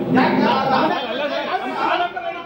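Several men talking over one another in a heated argument.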